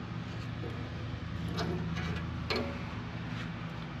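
Steady low machine hum, with a few faint clicks about one and a half, two and a half and three and a half seconds in.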